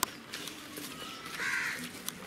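A crow cawing once, a short harsh call about one and a half seconds in.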